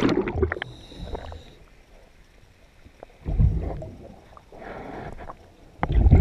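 Scuba diver breathing underwater through a regulator. A burst of exhaled bubbles fades out in the first half second, a low bubbling rumble comes about three seconds in, and a softer hiss follows near the end.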